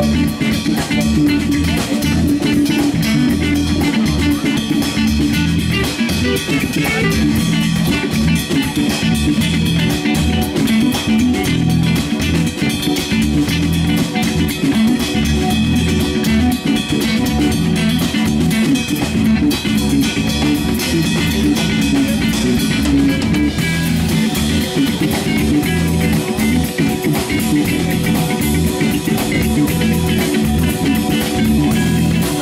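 Live band playing loudly and steadily: electric bass, electric guitar and drum kit, with the bass notes strong.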